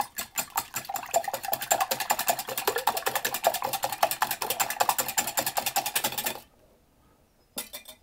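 A wire whisk beating egg whites in a glass bowl to a froth, a fast steady clatter of strokes against the glass. It stops about six and a half seconds in.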